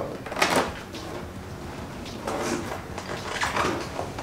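Soft rustling and breathy movement noises from two people shifting about, in a few short unpitched bursts about half a second in and again near the end.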